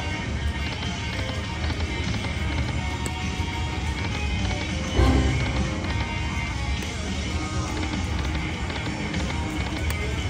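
Buffalo Gold slot machine playing its spin music and reel sounds over a dense casino-floor din, spin after spin. There is a louder thump about halfway through.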